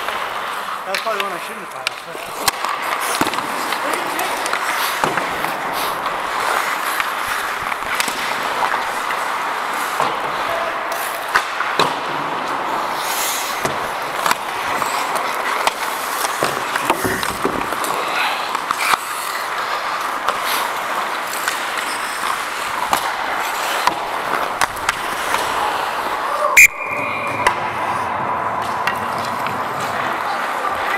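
Ice hockey play on an indoor rink heard up close: a steady scraping rush of skate blades on the ice, with frequent short clacks of sticks and puck, and one loud sharp crack near the end.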